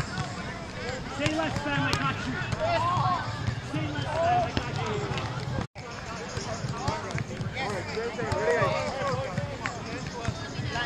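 Chatter and calls of people on the beach courts, with occasional short slaps of a volleyball being bumped and set during a rally. The sound cuts out for an instant just past halfway.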